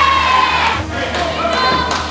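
Youth volleyball players shouting and cheering together, the voices dying down about a second in, with background music underneath.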